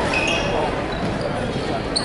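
Basketball game sounds in a gymnasium: spectators talking and a few brief sneaker squeaks on the hardwood court.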